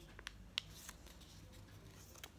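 Faint crinkles and a few soft ticks of a square of origami paper being folded by hand.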